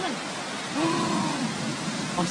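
Steady rushing noise of fast-moving floodwater and rain. About a second in, a person lets out one long drawn-out exclamation over it.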